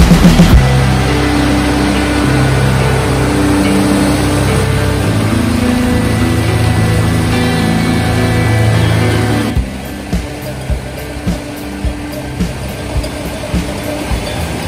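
Background music with long held notes, which stops about two-thirds of the way in. After it come the regular knocks, about two a second, of a laden pack mule's hooves on a plank footbridge.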